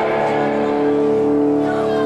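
Live punk-hardcore band playing loud, distorted electric guitar and bass, holding steady chords.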